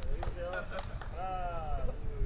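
Faint, indistinct talking from people nearby, with a few sharp clicks and a steady low rumble underneath.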